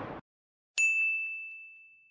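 The tail of a whoosh sound effect dies away. After a short silence comes a single bright ding chime, an editing sound effect that rings at one steady pitch as it fades out.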